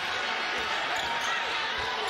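Arena crowd noise during live basketball play, with a ball bouncing on the hardwood court.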